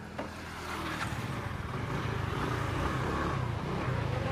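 Scooter engine running steadily at low revs, growing louder about a second in, with road noise.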